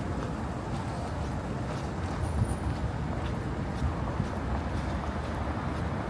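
Steady rumble of road traffic on a city street, with footsteps on the paved sidewalk.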